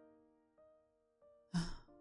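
A woman's soft breathy sigh about one and a half seconds in, over quiet piano background music.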